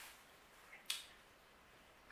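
Near silence: faint room tone, broken by one short, sharp click a little under a second in.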